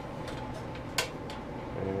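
A single sharp metallic click about halfway through as an electric lantern's spring-loaded chimney assembly is lowered and seats over the glass globe. Speech begins near the end.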